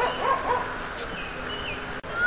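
Three quick, short yelping calls in the first half-second, then a few thin high chirps, over a steady background hiss.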